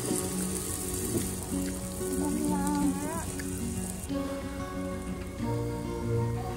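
Background music over the crackling hiss of meat sizzling on a barbecue grill; the sizzle drops away about four seconds in.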